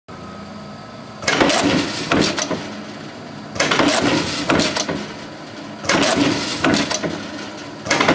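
Cincinnati 2512 mechanical squaring shear running, its 20 hp motor humming steadily while the ram cycles about every two and a half seconds. Each stroke is a loud clatter of knocks and clanks lasting about a second, three in full and a fourth starting at the end.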